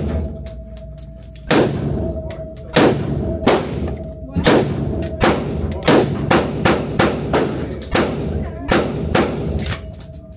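Semi-automatic AR-style rifle fired about fourteen times in an indoor range, single shots at an uneven pace starting about a second and a half in and coming quicker in the second half, each shot echoing.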